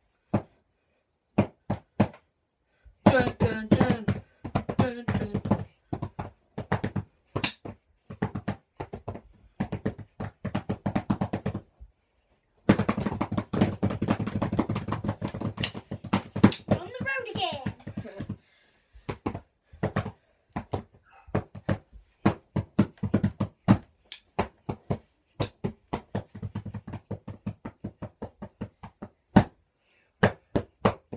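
Drumsticks beating on pillows in quick, uneven strokes, a beginner hitting freely. A voice joins in twice, a short stretch and then a longer one near the middle.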